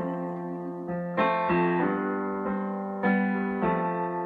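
Solo piano chords played on a keyboard, with no voice. Sustained chords ring on, and new chords are struck about a second in and again about three seconds in.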